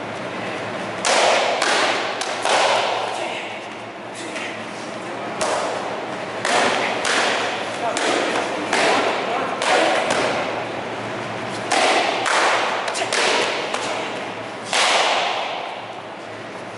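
Taekwondo kicks smacking against double kick paddles, a sharp slap each time, repeated more than a dozen times, often two in quick succession. Each strike echoes in a large hall.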